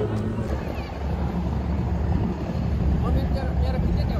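A low, steady rumble of a small motorboat's engine out on the water, mixed with wind on the microphone. Faint voices are heard near the end.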